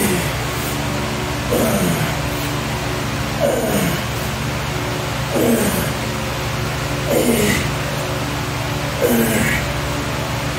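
A man grunting with effort on each dumbbell curl: six short groans that fall in pitch, about one every two seconds in time with the reps, over a steady hum.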